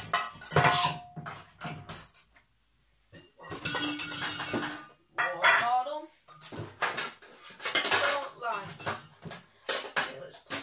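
Pots, pans and dishes clattering and knocking against each other as they are shifted about in a crowded kitchen cupboard, with a short scraping slide in the middle. A voice mutters in the second half.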